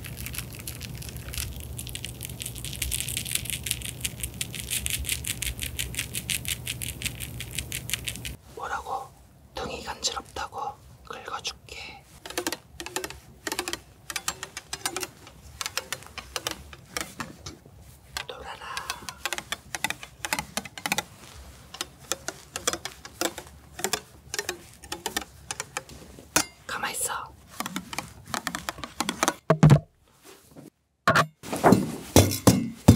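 Close-miked cosmetic ASMR: crushed pressed eyeshadow powder giving a dense, steady fine crackle. About eight seconds in this gives way to a foaming pump bottle handled right at the microphone, with irregular clicks, taps and squishy pumping sounds.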